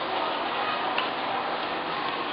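Steady background hiss with a single light click about a second in, while paper is being folded and creased by hand on a tabletop.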